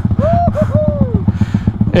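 Small motorcycle engine idling with a rapid, even pulse. A person's short rising-and-falling vocal sounds come over it in the first second or so.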